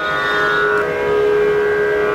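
Steady sruti drone of the kind that accompanies Carnatic singing, sounding a few unchanging pitches. One upper tone drops out a little under halfway through.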